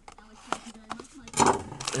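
A cardboard trading-card box being slit with a knife and handled, with a couple of soft clicks, then foil card packs crinkling near the end as they are pulled from the box.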